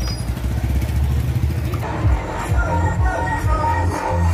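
A motor tricycle's engine idling with a low, steady rumble, then background music with a beat comes in about two seconds in.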